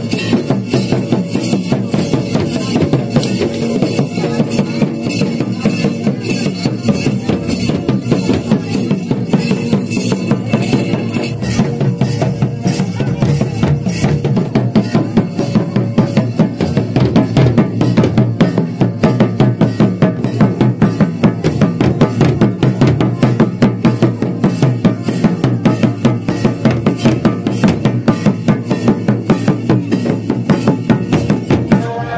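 Loud hand-beaten drumming on a double-headed barrel drum, played in a fast, steady rhythm of traditional Santhali wedding music.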